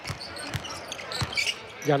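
Basketball being dribbled on a hardwood court: a few sharp bounces at uneven spacing.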